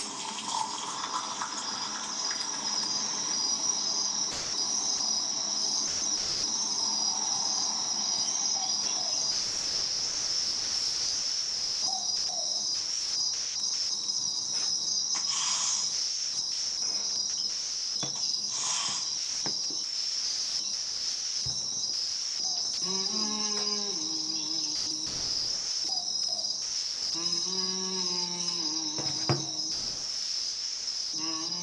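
A steady, high chirring of crickets runs throughout, pulsing evenly. In the last third a few held, pitched low notes come in twice, stepping up and down over the chirring.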